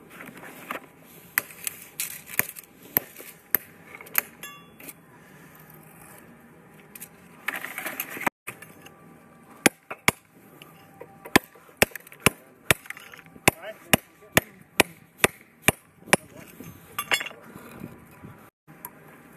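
Lump hammer striking a bolster chisel on a concrete block to cut it in two: a run of about twenty sharp hits at roughly three a second in the second half. Before that, tools clink as they are taken out of a metal bucket.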